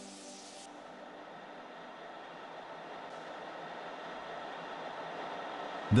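Steady rushing noise of a heavy section rolling mill at work as a hot steel section runs through the rolling stand, slowly growing louder.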